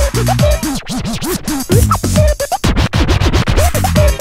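Acid house / new beat track playing from a 12-inch vinyl record, with turntable scratching over it: a sound dragged back and forth so that it sweeps up and down in pitch, several strokes a second through the second half.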